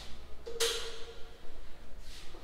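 A single sharp knock about half a second in, followed by a short ringing tone that dies away within about a second, as a framed mirror held on suction-cup lifters is handled against the wall.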